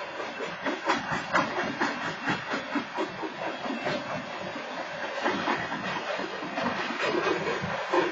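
Freight train boxcars rolling past over a grade crossing, their wheels clattering with a run of irregular clacks over a steady rumble.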